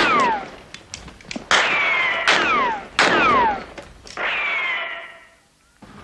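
Western-style gunshot ricochet sound effects: about five sharp cracks, each followed by a whine that falls in pitch. The last one is softer and trails away about a second before the end.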